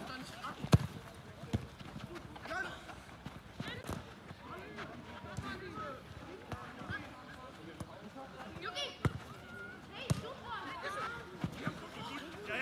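A football being kicked during play: a handful of sharp thuds, the loudest about a second in, with distant shouting voices of players.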